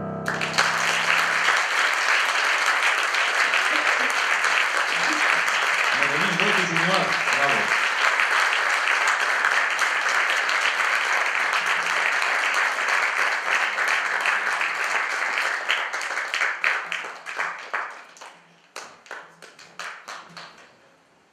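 Theatre audience applauding as the last piano chord dies away. The applause holds steady for about fifteen seconds, then thins into scattered claps and dies out; a voice calls out briefly about six seconds in.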